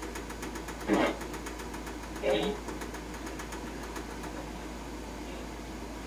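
Two brief, faint bursts of voice over a steady low electrical hum, with a rapid, even ticking during the first two seconds or so.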